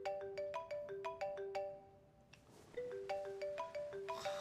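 Smartphone ringtone for an incoming call: a quick melody of short notes that plays, pauses for a moment just past halfway, and then starts over.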